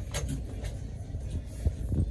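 Low rumbling handling noise from a phone being moved while filming, with a couple of soft knocks, one just after the start and one near the end.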